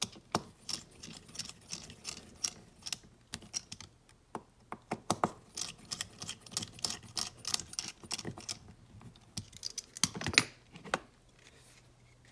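Small hex driver tightening the servo mounting screws on an RC car's radio tray, drawing the rubber servo grommets down. It gives a string of light, irregular metallic clicks and ticks that stop shortly before the end.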